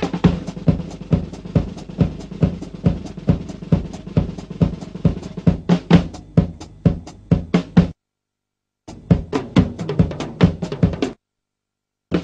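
Drum kit played solo: bass drum and snare strokes with fast rolls and fills across the toms. The playing breaks off abruptly into complete silence twice, for about a second each time.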